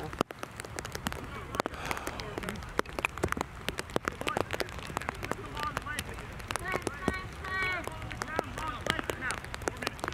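Rain pattering on a plastic cover wrapped over the camera: many small, irregular taps throughout. From about six seconds in, distant voices call out across the field.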